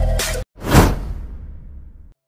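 Electronic intro music cuts off abruptly about half a second in. A single whoosh sound effect follows, swelling quickly and then fading away over the next second and a half.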